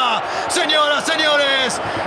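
A man's voice: a football commentator talking continuously, with some drawn-out words.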